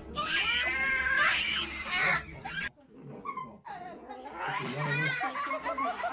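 A cat yowling: one long wavering call for about the first two seconds, then more calling after a short pause, mixed with a person's voice.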